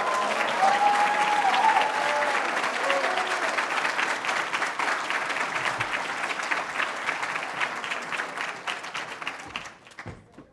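An audience applauding for an announced prize winner, with a few cheering voices over the clapping in the first seconds. The applause dies away just before the end.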